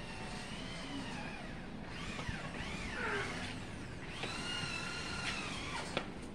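Long, high-pitched animal calls: two drawn-out, steady calls of about two seconds each, with shorter swooping calls that fall in pitch between them.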